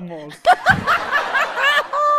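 A woman laughing, a quick run of high-pitched breathy laughs starting about half a second in.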